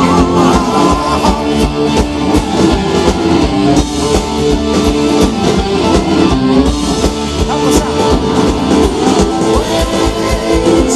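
Live rock band playing loud through a PA: electric guitar, bass guitar, keyboards and a drum kit, with a steady driving drum beat.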